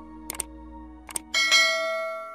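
A bell-like chime is struck about one and a half seconds in and rings on, the loudest sound here, rich in overtones. Before it, a held ambient music chord sounds with two short double clicks.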